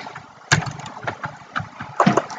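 Computer keyboard keys clicking in a quick, irregular run of typing, starting about half a second in.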